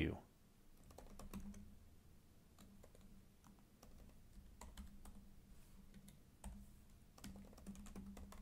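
Faint typing on a computer keyboard: a scattered, irregular run of keystrokes as a line of code is typed.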